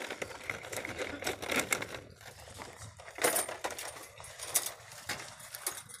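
A run of light clicks and metallic clinks: packaged store merchandise knocking and sliding on metal pegboard hooks as it is handled. The sharpest clicks come about three seconds in and again a little after four and a half seconds.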